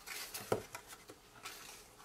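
Soft handling noises from a paper piercer and a small card box as a glue dot is pressed on, with one sharp little click about half a second in and a few fainter ticks after.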